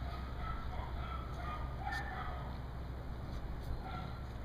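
Short bird calls repeated several times a second, over a steady low rumble.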